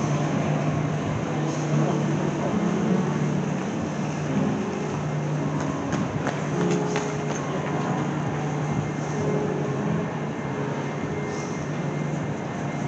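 Busy railway station concourse ambience: a steady low hum under a continuous wash of bustle, with a wheeled bag rolling along the hard floor.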